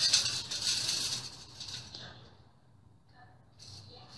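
Powdered laundry detergent being poured from a plastic container into a bowl: a grainy hiss of falling granules for about two seconds that trails off.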